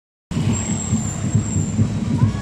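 Motorcycle engines running in street traffic, with a dense low rumble. The sound cuts in after a brief silence at the very start.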